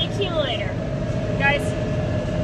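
Tractor engine running steadily under load, a low continuous drone with a steady whine on top. Short bits of a voice come in at the start and again about one and a half seconds in.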